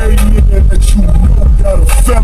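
Car-audio subwoofers on a 500-watt RMS amplifier playing bass-heavy music at full volume. The deep low end is steady and overloads the microphone, and it jumps up loud right at the start.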